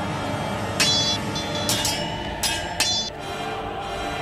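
Sword blades clashing: four sharp metallic clangs that ring briefly, between about one and three seconds in, over background music.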